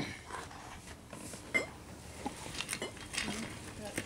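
A murmured 'mm-hmm' at the start, then a few scattered light clicks and knocks over quiet background hiss.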